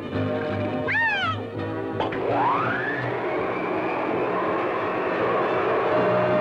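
Cartoon soundtrack: orchestral score with a falling, whistle-like pitched glide about a second in, then a rising glide just after two seconds that leads into a steady hissing rush under the music.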